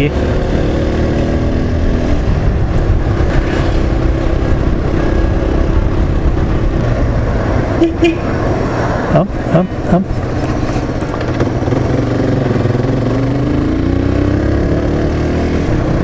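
Motorcycle engine running on the move: its note falls in the first couple of seconds as the bike slows, then rises again a few seconds before the end as it accelerates away.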